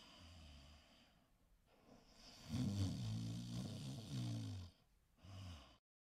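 A faint, low-pitched human vocal sound lasting about two seconds, starting a couple of seconds in, with a brief faint trace of it again near the end.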